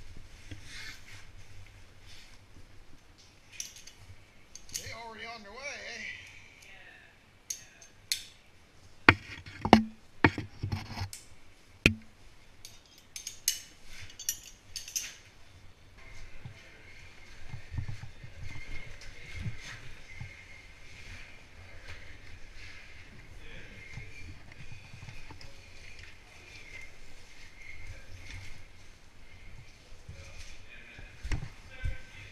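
Caving gear knocking and scraping against rock as a caver moves through a tight cave passage, with a cluster of sharp knocks in the middle. A person's voice, wavering in pitch, is heard briefly before the knocks.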